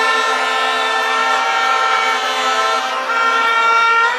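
Several horns blown together by a crowd, holding steady notes that sound as a loud chord.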